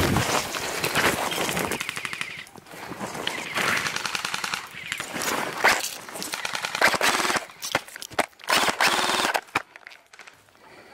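Airsoft rifle firing on full auto: several rapid bursts of quick-fire clicks, each lasting about half a second to a second and a half, with short gaps between them.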